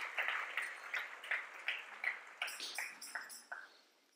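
Audience clapping: a run of short claps, about three a second, thinning out and stopping shortly before the end.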